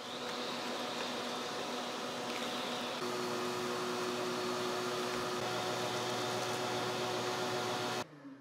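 Wet/dry shop vacuum running steadily as its hose nozzle is worked over the floor. About three seconds in, the suction note shifts, getting slightly louder and picking up a new steady tone.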